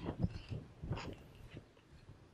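A few faint, brief clicks and rustles in a quiet room, clustered in the first second, with no speech.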